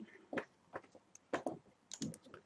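A few short, sparse computer mouse clicks, about five spread across two seconds, each loud for a moment against a quiet room.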